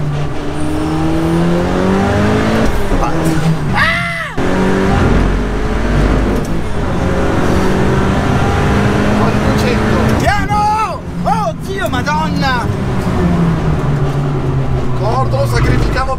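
Dallara Stradale's turbocharged four-cylinder engine heard from inside the cabin on track, its pitch climbing as it accelerates and dropping at the shifts, with the passenger laughing and shouting over it about four seconds in and again from about ten seconds.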